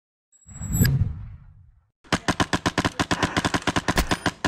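A whoosh sound effect that swells with a low rumble and a high ringing tone, fading out by about two seconds in. Then, after a short gap, an airsoft rifle firing full-auto, a rapid even run of about ten shots a second.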